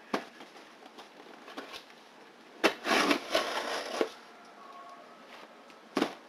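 Cardboard shipping box being opened with scissors: a crackling rip of packing tape and cardboard lasting about a second and a half, a little over halfway through, with a knock of the box being handled near the start and another as it is set on the table at the end.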